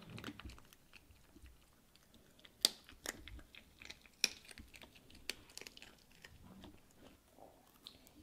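Pomeranian puppy chewing a bone: faint, irregular crunches and clicks of its teeth, with a few sharper cracks spread through.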